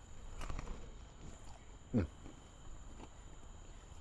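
A person chewing a mouthful of glazed fried croissant pastry close to a clip-on lapel mic, with faint wet crackles, and a short hummed "mm" of enjoyment about two seconds in.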